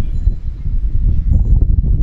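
A loud, low, fluctuating rumble with no clear pitch or rhythm, picked up by the microphone.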